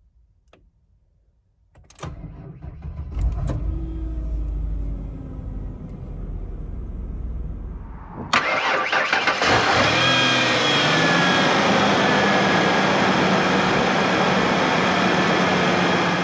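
A 1994 Ford Aerostar's 4.0-litre Cologne overhead-valve V6 is cranked and catches about two seconds in, then settles into a steady idle. About eight seconds in, the same idle is heard close at the open engine bay: louder and hissier, with a faint whir.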